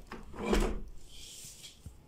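Rubbing and scraping as a hand handles a white PVC window frame behind a sheer curtain: one loud scrape about half a second in, then a fainter, higher hiss.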